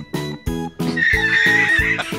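Upbeat strummed-guitar background music with a steady beat. About a second in, a horse-whinny sound effect plays over it for about a second.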